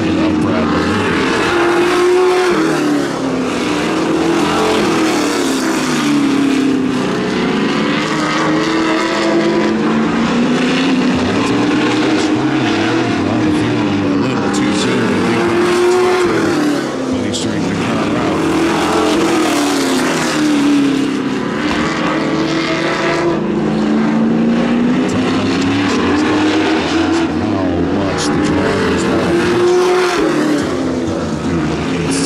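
Sportsman stock car engines racing on a short oval, two cars running close together. The engine note climbs on the straights and drops as they lift for the turns, over and over.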